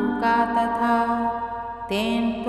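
A voice chanting a Sanskrit devotional stotra in a steady melodic recitation, holding long, nearly level notes within one phrase, with a brief break near the end before the next line begins.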